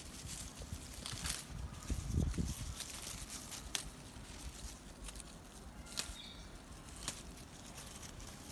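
Cherry tomato plant leaves and stems rustling, with light clicks, as ripe tomatoes are picked by hand. A low thump comes about two seconds in.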